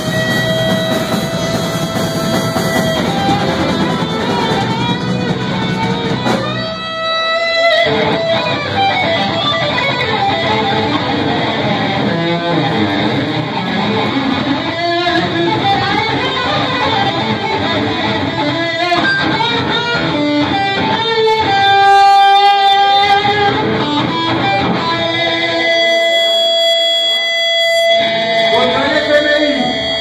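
Live rock band playing an instrumental passage: electric guitar carrying the lead with long held notes that bend and waver, over bass, drums and keyboard.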